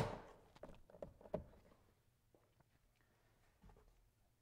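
Plastic door trim piece snapping into its clips with one sharp click, followed by a few lighter clicks as it is pressed home.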